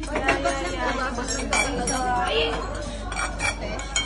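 Porcelain dishes and chopsticks clinking at a dining table, under chatter of several voices.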